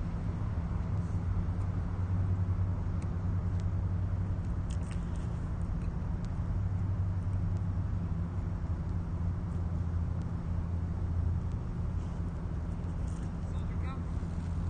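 A steady low mechanical hum with a few faint ticks over it.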